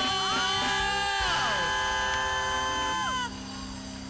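Church worship singing: voices holding long notes over sustained accompaniment chords, with pitches sliding down as the voices drop off about three seconds in, leaving the chords sounding more quietly.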